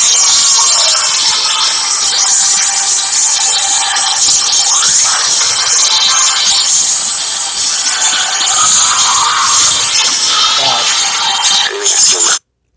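Loud action-trailer music with sound effects, playing back with thin sound and little bass.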